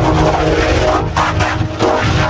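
Loud, heavily distorted music from an effects-processed logo jingle, a dense clash of pitched tones and noise with a brief dip near the end.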